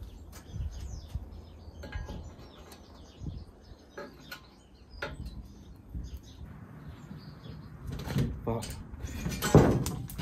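Knocks and clinks of a painted steel ladder bracket being offered up against a van's rear door and shifted to line its bolts up with the holes, with a louder knock near the end.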